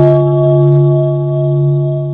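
A deep bell struck at the very start and left ringing, its low tone held steady with a few higher overtones, swelling and fading slowly as it sustains.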